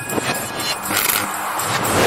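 Animated outro sound effects: whooshes that swell and pass about once a second, over a short music sting.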